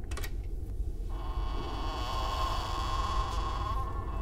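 A short click, then from about a second in a steady electric-sounding buzzing drone over a constant low rumble, holding until just before the end.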